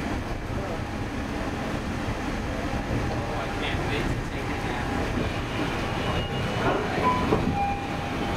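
Walt Disney World monorail car in motion, heard from inside the cabin: a steady low rumble of the train running along its track.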